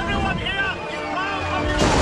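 Men shouting amid a bombardment, then an artillery shell bursts in the water near the end: a sudden loud blast whose rumble carries on.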